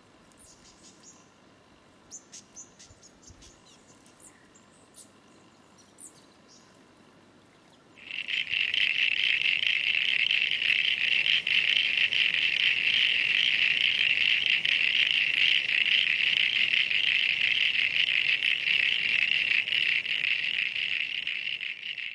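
Faint, scattered high chirps at first. About eight seconds in, a loud, continuous high-pitched rapid trill starts suddenly from a calling frog and holds steady to the end.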